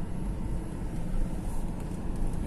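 Steady low rumble of a car in motion: engine and road noise.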